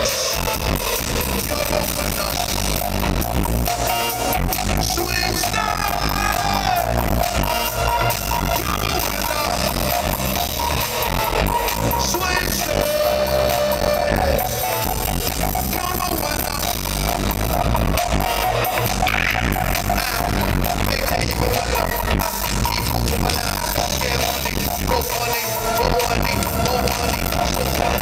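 A live band plays loud, steady music with a heavy bass beat, electric guitars and violins over it, with sustained held notes in the melody.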